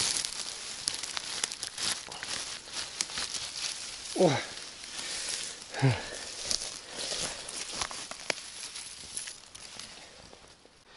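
Dry grass, stalks and twigs rustling and crackling as a hand reaches in, picks a mushroom and carries it through the undergrowth. Two short falling vocal sounds from a man, about four and six seconds in, are the loudest moments.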